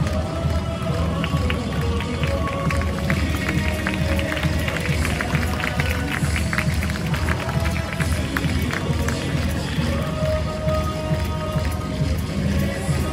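Music playing over a baseball stadium's PA system, with a heavy steady beat and a sustained melody. Scattered hand clapping from the stands runs through the middle stretch.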